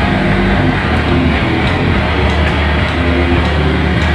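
Live rock band playing loud: heavily distorted electric guitars and bass over a drum kit with cymbals, a dense, steady wall of sound.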